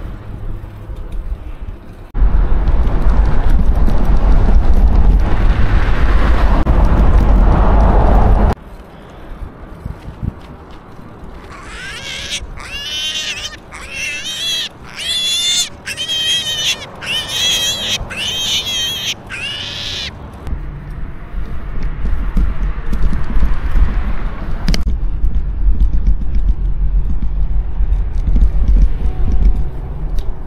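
Wind buffeting the microphone while cycling, loudest in a long gust early on and again near the end. In between, a string of about eight high, piercing animal calls, roughly a second apart.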